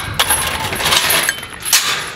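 Metallic rattling and clinking of a galvanized steel farm-gate latch and fence being handled, with several sharp clicks in a dense, hissy clatter that eases off near the end.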